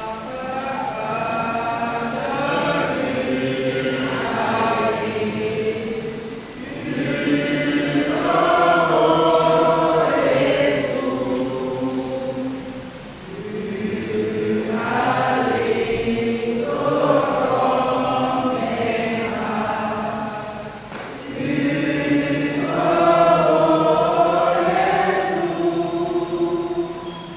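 A group of voices singing a slow hymn together in long held phrases, pausing briefly between phrases.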